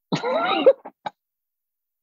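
A man's short laugh, about half a second long.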